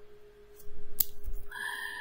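Clicks and light handling noise from working at a laptop keyboard, with one sharp click about halfway through, over a faint steady hum.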